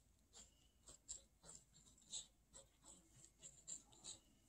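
Faint scratching of a pen drawing quick, uneven short lines on paper, a few strokes a second.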